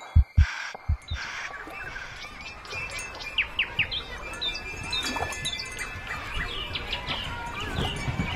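Low heartbeat-like thumps with breath noise stop about a second in. Birds chirping take over, with steady chime-like ringing tones beneath, growing slowly louder.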